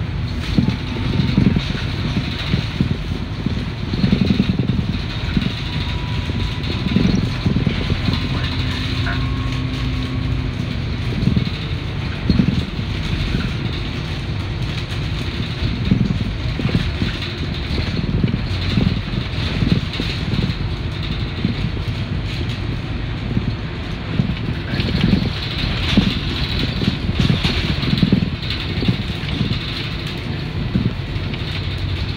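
Inside an MBTA RTS transit bus under way: the diesel engine and road noise make a steady low rumble, broken by frequent irregular knocks and rattles from the bus body.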